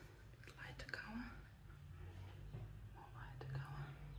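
Faint, whispered or muttered speech, in two short snatches over a low steady hum.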